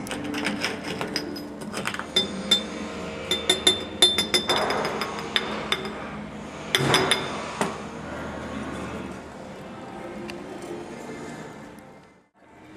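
Potassium hydroxide pellets clinking as they are tipped from a porcelain dish into a glass flask: a run of sharp, ringing clicks, thickest a few seconds in.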